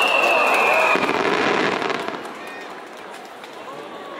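Barrage of fireworks bursting in rapid succession, a dense crackling with a high whistle sliding slightly down in pitch through the first second. The barrage dies away about two seconds in, leaving quieter crackle and crowd voices.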